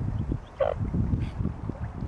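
A mute swan gives one short call about half a second in, over a low rumble of wind on the microphone.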